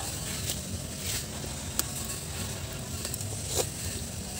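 Wood fire crackling under a pot of simmering soup: a steady hiss with scattered sharp pops.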